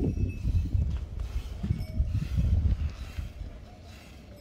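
Hand milking of a Gir cow: rhythmic squirts of milk from alternating teats into a steel bucket that already holds milk. The strokes come a few times a second and grow quieter near the end.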